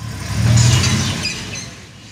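Army pickup truck's engine as it drives past, swelling about half a second in and fading as it moves away.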